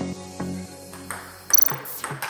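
Background music with a steady tone, with a few faint clicks of a table tennis ball off bats and table. About a second and a half in, a louder, short high ringing sound.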